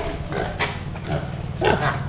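A pig grunting in short bursts, the loudest grunt near the end.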